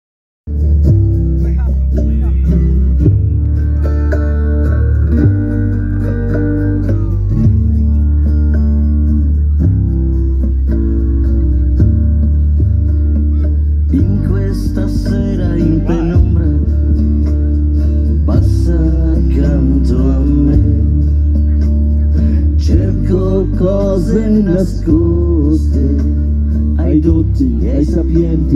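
Slow song with a steady bass line and guitar; a singer's voice comes in about halfway.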